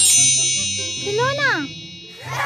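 A bright, bell-like ding that rings on over background music with a steady low beat. About a second and a half in, a short whoop rises and falls in pitch.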